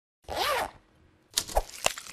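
Animated logo sound effects: a short whoosh with a bending pitch about a quarter second in, then a quick, zipper-like run of clicks and ticks starting a little past halfway.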